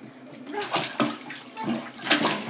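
Bathwater splashing as a toddler's hands move in the tub, with a few quick splashes between about half a second and a second in.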